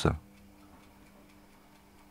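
Very quiet room tone with faint ticking and a low steady hum, after the tail of a spoken word right at the start.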